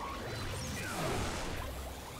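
Cartoon battle sound effects: a dense mix of crashes and sweeping, falling whooshes, with faint music under them.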